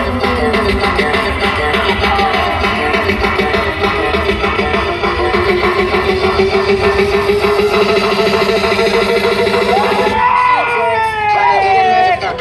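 Loud music played live through a large outdoor loudspeaker rig, with a fast, steady beat under a wavering lead melody that swoops up and down near the end.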